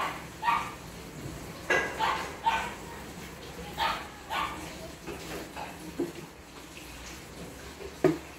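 Dog barking repeatedly, short barks coming singly and in quick pairs, several in the first half and a few fainter ones later.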